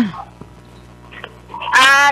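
A short pause on a radio phone-in line with a steady low electrical hum and a faint click, then a caller's high-pitched voice coming in over the telephone line near the end.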